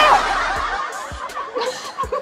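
A woman laughing in soft, short snickers, right after a loud held high cry cuts off at the start.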